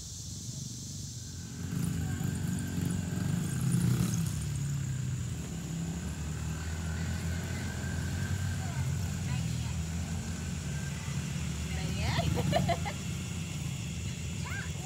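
A child's small dirt bike engine running steadily as it is ridden along a dirt trail. A brief voice is heard near the end.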